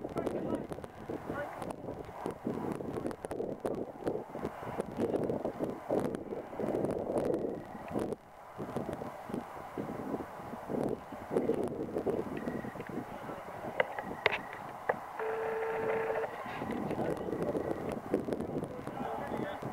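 Indistinct voices of players and spectators at a rugby match, talking and calling out over open ground, with a short held call near the end.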